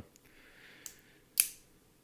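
Gerber Suspension multi-tool being folded shut: a faint metal rub and a small tick, then one sharp metallic click about a second and a half in as the handles close.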